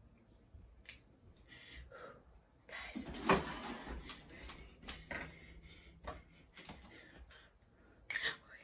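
Small clicks and knocks of makeup items and containers being handled, with a louder rustling burst about three seconds in.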